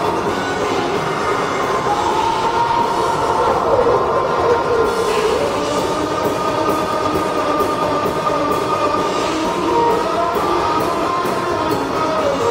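Live hard rock band in an instrumental passage: distorted electric guitar playing sustained, bending lead lines over drums and cymbals.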